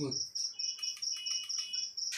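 Insect chirping steadily in a fast, even pulse, high-pitched, about seven pulses a second.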